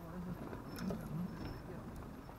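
Indistinct speech from a person talking, with a few light clicks about a second in.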